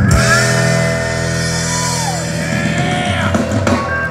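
Live country-rock band of acoustic and electric guitars, bass and drums holding a long sustained chord while guitar notes bend up and down over it, ringing out at the close of a song.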